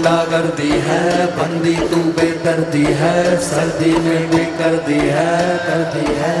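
Live concert music: a band's passage with a held low drone, a wavering chant-like melody line over it and a regular beat.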